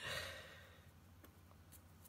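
A person's breathy sigh: a short exhale that fades within about a second, followed by near quiet with a couple of faint ticks.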